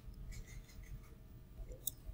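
Quiet room tone with a faint low hum, and a single sharp computer-mouse click near the end.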